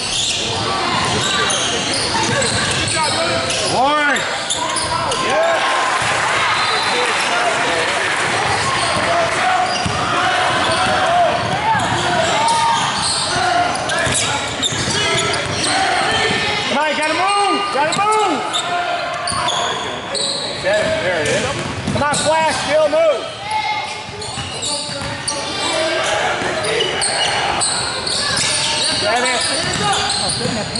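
Basketball game in a large gym: a ball dribbling on a hardwood court among the indistinct voices of players and spectators, all echoing in the hall.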